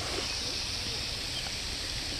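Steady outdoor background noise with a few faint, soft calls and nothing sudden standing out.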